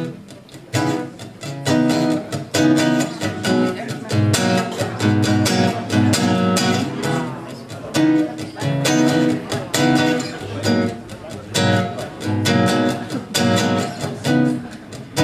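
Acoustic guitar strummed in a steady, rhythmic chord pattern.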